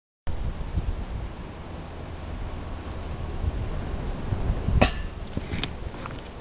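Steady low rumble of outdoor background noise on the microphone, with one sharp click or clink about five seconds in and fainter clicks just after. The sound cuts out for a moment at the very start.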